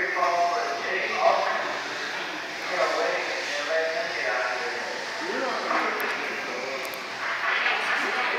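Electric 1/10-scale RC buggies racing on an indoor dirt track, their motors whining and changing pitch with throttle, mixed with indistinct voices echoing in the hall.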